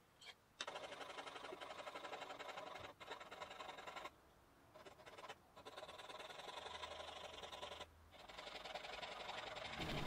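Jeweler's saw with a fine blade cutting a thin piece of bog oak for a fretboard inlay: faint, quick, steady rasping strokes, pausing briefly about four seconds in and again near eight seconds.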